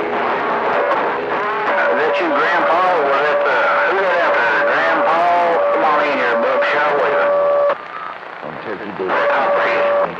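CB radio receiving on channel 28: garbled, unintelligible voice transmissions with a steady whistle tone running under them, the heterodyne of two carriers on the channel at once. The signal drops to quieter static about three-quarters through, then the voice and whistle come back.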